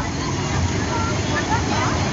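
Steady rushing of a fast-flowing river, with faint voices talking in the background.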